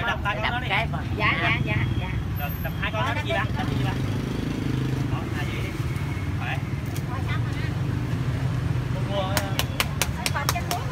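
A motorbike engine idles close by in a steady low rumble beneath people talking, with a run of sharp clicks near the end.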